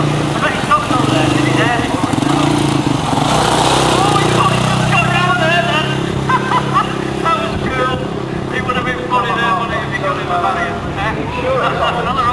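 Quad bike engine running at fairly steady revs while the machine is ridden balanced on two wheels, with voices talking over it throughout.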